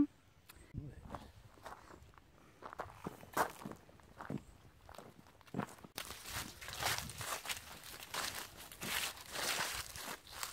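Footsteps crunching through dry fallen leaves on a dirt path. They are sparse and irregular at first, and become a denser, louder run of crunching about six seconds in.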